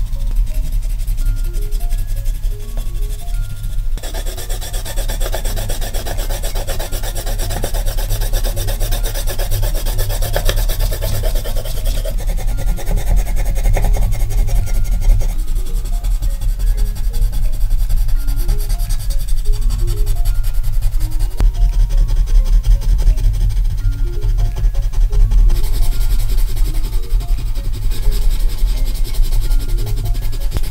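Crayon and coloured pencil scribbling fast back and forth on paper, a dense scratchy rasp that gets louder about four seconds in. Light music plays underneath.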